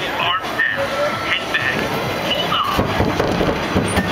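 Roller coaster train rolling slowly along the track, its wheels running on the rails in a steady rumble, with brief snatches of riders' voices over it.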